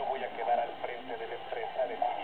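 Dialogue from a television drama, heard off the TV set's speaker, so it sounds thin and boxy.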